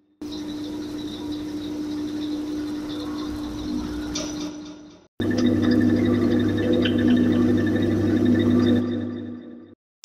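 Two lo-fi ambience presets played in turn on the Vital software synthesizer, each a held drone of sampled room texture lasting about five seconds. First 'Empty Cinema', a thin steady tone under a crackly hiss; then, after a brief break, 'Inside Fridge', a louder, lower steady hum.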